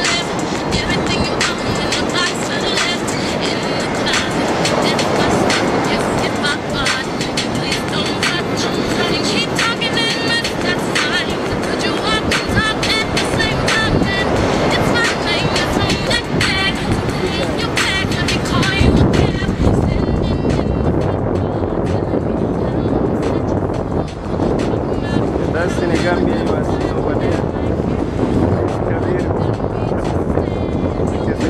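Wind buffeting the microphone in a steady loud rush with frequent gusty knocks, over background voices and music.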